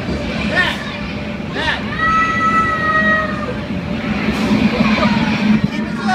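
A blower fan running steadily with a low hum, with young children's excited shouts and squeals over it.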